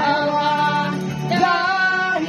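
A woman singing into a handheld microphone, holding long notes in two phrases, the second coming in about halfway through, with faint instrumental accompaniment.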